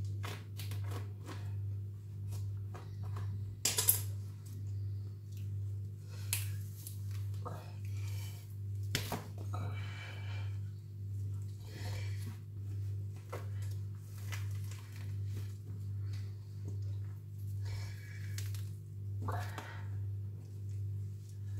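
Rabbit pelt being pulled and torn off the carcass by hand, giving scattered short tearing clicks and crackles, loudest about four seconds in. Under it is a steady low hum that swells about once a second.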